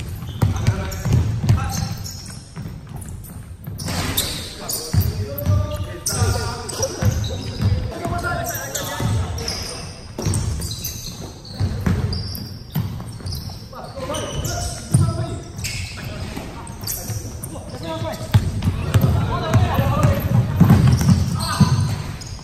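Basketballs bouncing on a hardwood gym floor during a pickup game, with repeated sharp knocks, mixed with players' indistinct voices in a large gym.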